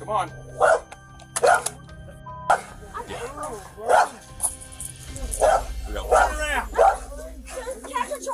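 A dog barking repeatedly in short barks, about once a second, more closely spaced in the second half. The dog is agitated.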